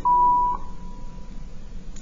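A steady electronic beep at one high pitch, loud for about half a second, then carrying on faintly until near the end.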